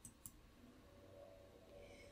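Near silence: faint room tone, with one small click shortly after the start.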